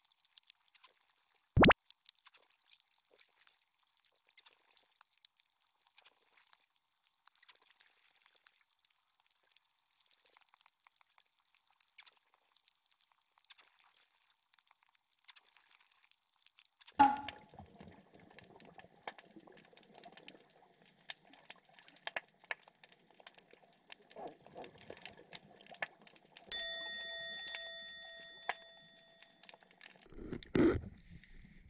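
Faint underwater crackle of scattered clicks, broken by a sharp knock early on and another at the middle. Near the end a single ringing chime sounds and fades away over about three seconds.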